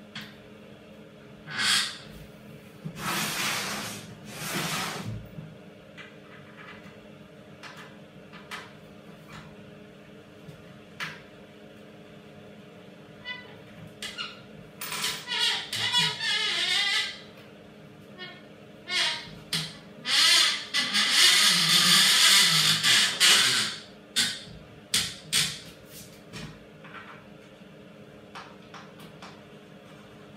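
Hand-assembly noises from a melamine kitchen wall cabinet on a metal workbench: scattered clicks and taps of small parts and a hand screwdriver, broken by several loud scraping passages of a few seconds as the cabinet is shifted and turned on the bench. A steady low hum runs underneath.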